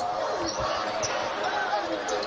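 Live college basketball game sound: steady arena crowd noise under play around the basket, with faint indistinct voices.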